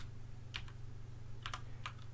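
Computer keyboard keystrokes: about five light taps in two short runs, one about half a second in and another around a second and a half in.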